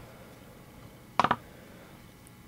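Quiet room tone broken by a brief cluster of two or three sharp clicks a little past the middle.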